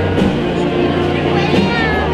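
Spanish processional wind band (brass and woodwinds) playing held chords of a march, over the murmur of a crowd. Near the end a short, high gliding cry rises above the music.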